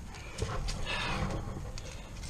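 Cast-iron kettlebell gripped and shifted on a concrete slab: a few light knocks and scrapes, about half a second apart.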